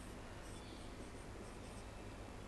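Faint squeaking and scratching of a marker pen writing on a whiteboard in short strokes, over a low steady room hum.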